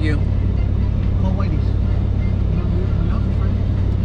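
Steady low rumble of engine and road noise heard inside a moving pickup truck's cab.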